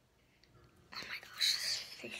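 A girl whispering briefly, a breathy, hushed voice that starts about a second in.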